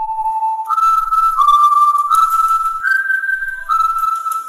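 A whistled melody of a few long held notes: it starts on a lower note, jumps up a little under a second in, then steps down and up between a few higher notes.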